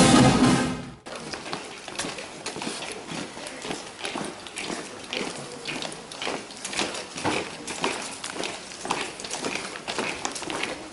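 A brass band playing, cut off abruptly about a second in, followed by the irregular clicking of many hard-soled shoes marching on paving stones.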